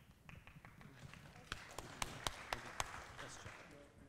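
Handling noise from a handheld microphone being picked up: a quick series of sharp taps and knocks, bunched in the middle, over a soft hiss.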